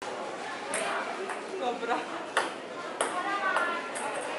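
Table tennis ball clicking off paddles and the table during a casual rally: about six sharp ticks at uneven intervals, over voices chattering in the background.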